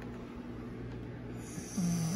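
A sleeping woman snoring: one short, low snore near the end, over a steady faint low hum.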